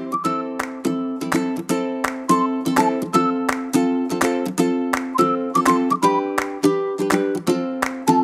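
Background music: a plucked string instrument strumming a steady beat of about three to four strokes a second, with a simple higher melody over it.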